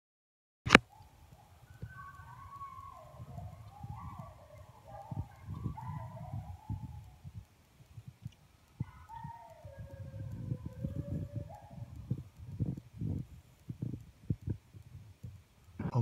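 Coyotes howling and yipping, several wavering calls overlapping for a few seconds, then one long howl falling in pitch about nine seconds in. Low rumbling noise on the microphone runs underneath, and a sharp click comes at the very start.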